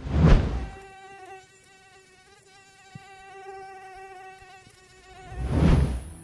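Mosquito wingbeat whine, a steady high hum with a slightly wavering pitch, between two loud swelling whooshes, one at the start and one near the end.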